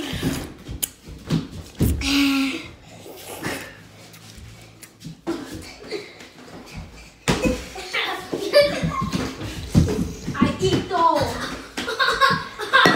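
Children's voices, talking and shouting, with a few scattered thumps from a pillow fight; the voices grow busier in the second half.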